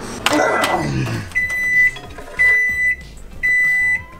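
Microwave oven signalling the end of its heating cycle with three long, steady beeps, each about half a second, about a second apart. A short sound that falls in pitch comes just before them.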